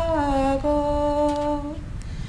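A woman singing unaccompanied in slow, long-held notes; the line steps down a little after the start, holds a note, and fades out near the end.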